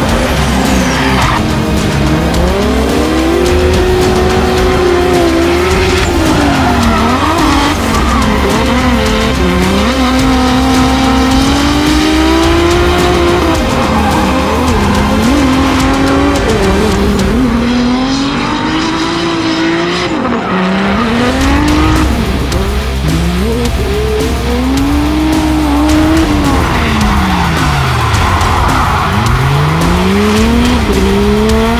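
Drift car engines revving up and down again and again as the cars slide, with tyre squeal, under background music with a steady low beat.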